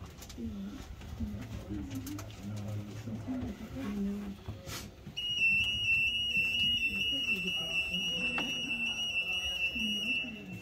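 A steady, high-pitched electronic alarm tone starts about halfway through and holds unbroken for around five seconds, over background voices.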